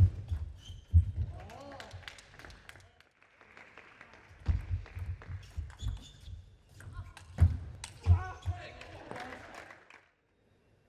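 Table tennis rally: the celluloid ball clicking off the paddles and the table, with thuds of the players' footwork on the court floor.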